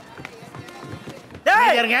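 Faint background clatter for over a second, then a loud voice breaks in suddenly, crying out with a pitch that sweeps up and down.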